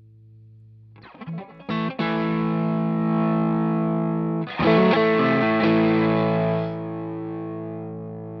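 Electric guitar played through a Cusack Screamer Fuzz Germanium pedal, giving a distorted fuzz tone. A few quick chord stabs come about a second in, then a full chord at two seconds rings on. It is struck again a little past halfway and fades out toward the end.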